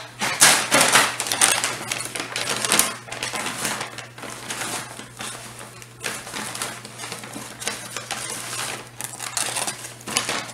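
Someone rummaging through fly-tying materials to find a pack of legs: an irregular clatter and rustle of small items being shifted about, busiest and loudest in the first three seconds.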